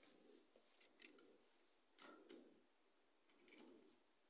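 Near silence: room tone, with a few faint brief ticks.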